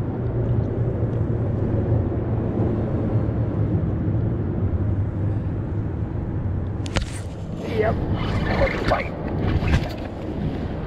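Steady low rumble of wind and water. About seven seconds in there is a sharp knock, then a burst of knocks and rustling handling noise with short grunts as an angler jerks a heavy rod to set the hook on a biting fish.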